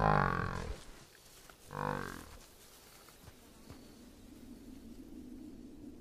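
Two low, moo-like calls of a sauropod dinosaur: the first at the very start, the second shorter one about two seconds in. A faint steady low drone follows.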